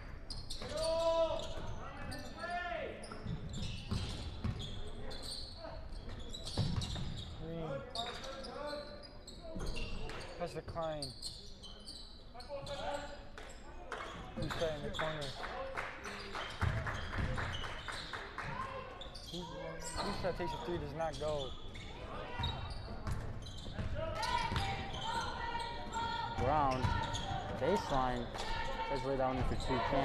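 Basketball bouncing on a hardwood gym floor during live play, with players' and spectators' voices in a large gym.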